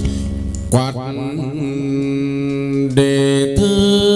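Hát văn ritual music: a chant-like sung line of long held, ornamented notes over instrumental accompaniment, with new notes starting about a second in and again near three seconds.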